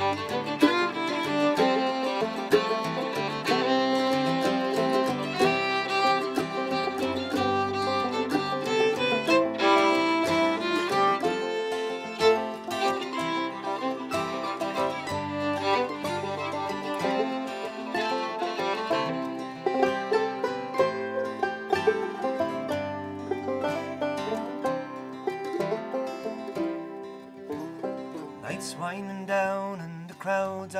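Acoustic bluegrass band playing an instrumental break between sung verses: fiddle, five-string banjo, mandolin and acoustic guitar together. Near the end the playing thins out and the fiddle drops out, leaving mostly guitar.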